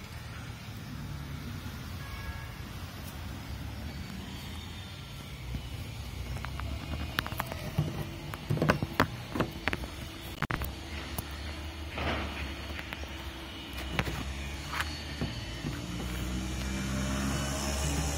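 Pliers gripping and working a tight plastic windshield-adjustment knob on a motorcycle, giving a cluster of sharp clicks and knocks in the middle, over a steady low hum in the background.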